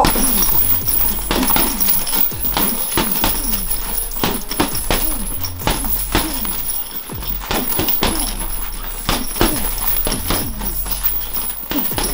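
Background music with a steady bass line, over irregular punches landing on a heavy punching bag.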